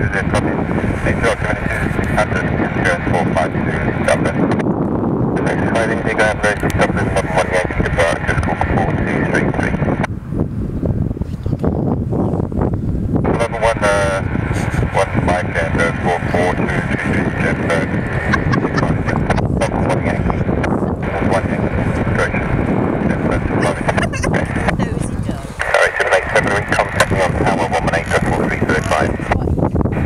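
Indistinct, continuous voices over a steady outdoor rumble, the talk thinning briefly about ten seconds in and again near 25 seconds.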